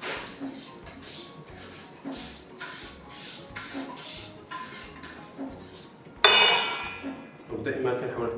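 A utensil scraping the inside of a stainless steel saucepan over a steel mixing bowl, in short strokes about two a second. About six seconds in, a sharp metallic clang of steel on steel rings out and fades.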